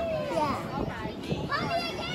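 Indistinct background voices of children and adults talking, with no clear words.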